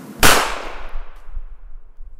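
A single loud, sharp bang, a sound effect for a hit or shot in a LEGO stop-motion fight, its hissing tail fading over about a second and a half.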